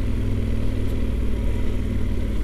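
Yamaha XT1200Z Super Ténéré's parallel-twin engine running steadily at low street speed, the bike set in its touring riding mode.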